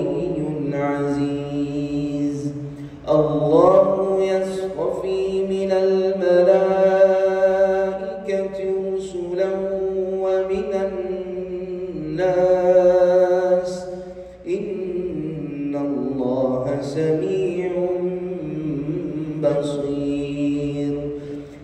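A man reciting the Quran in melodic tajwid style. He holds long, ornamented notes that glide up and down, broken by two short pauses for breath.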